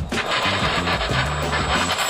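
Background music over a rushing scraping noise with a thin high whine: a radio-controlled model jet skidding nose-down along the ground after a failed landing.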